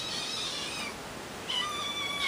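Kittens mewing to be fed: a high-pitched mew in the first second, then another starting about one and a half seconds in, falling in pitch.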